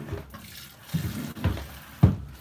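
Milk squirting from a cow's teats into a plastic bucket during hand-milking, in a few separate spurts.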